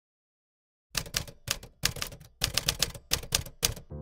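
About a second in, a rapid, irregular run of sharp mechanical clacks begins, like keys struck on a typewriter. There are about a dozen strikes over three seconds.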